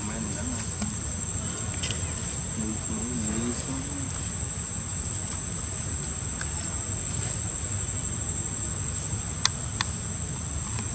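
Steady high-pitched insect drone over a constant low rumble, with a faint wavering voice-like sound a few seconds in and two sharp clicks close together near the end.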